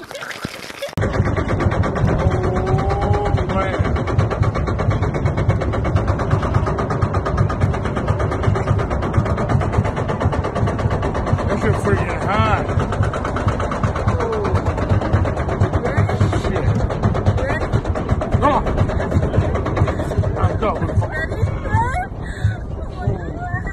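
Loud, steady rushing and rumbling of wind on a phone's microphone as a man rides high up on an amusement-park ride, starting about a second in. His voice comes through over it, with a rising-and-falling whoop near the middle.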